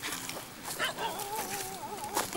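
Striped hyena whimpering: a high, wavering whine lasting about a second, starting about halfway in, after a few short knocks.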